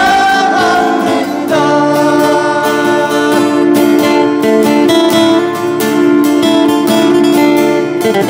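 Acoustic guitars strummed together while a man sings in long held notes.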